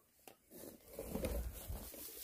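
Rustling of tall grass and leafy brush being pushed through, mixed with phone handling noise: a couple of light clicks at the start, then irregular rustling with a low rumble around the middle.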